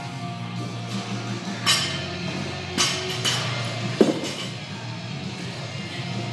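Rock music with guitar plays throughout, with a few short hissing sounds in the first half. About four seconds in comes a single sharp thud, a loaded barbell set down on the rubber gym floor.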